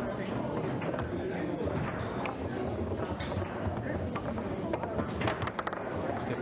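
Foosball being played: sharp clicks of the ball striking the figures and the table walls, with a quick run of several clicks a little past five seconds in. A steady murmur of background voices runs underneath.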